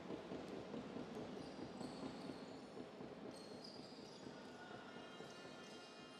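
A basketball dribbled on a hardwood gym floor, faint, over the low murmur of a crowd in a sports hall.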